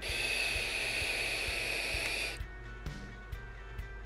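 Steady hiss of a long draw through a Vaporesso Cascade Baby tank while its 0.18 ohm mesh coil fires at 65 watts, with a faint whistle in the airflow. It cuts off sharply a little over two seconds in.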